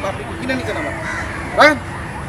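A crow cawing once about one and a half seconds in, the loudest sound here, over a steady outdoor background hiss.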